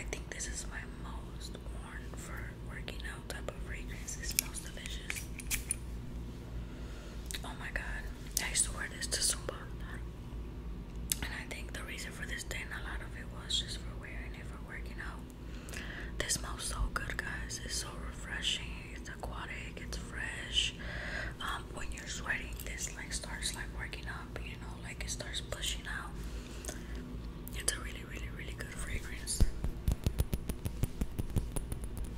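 A person whispering throughout, with a few light clicks scattered among the words.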